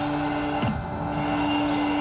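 Live rock band in an instrumental passage between vocal lines: a long steady held note drones on, with a quick downward pitch slide a little after half a second in and again at the end.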